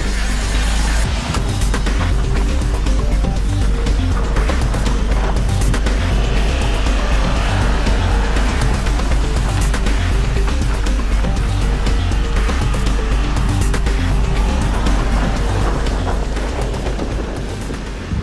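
Background music with a steady beat over the sound of a Subaru XV's boxer four-cylinder engine and its tyres sliding and spraying on snow. It fades out near the end.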